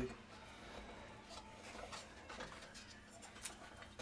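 Faint, scattered light clicks and taps of hands handling the plastic housing of a Braun shaver cleaning station.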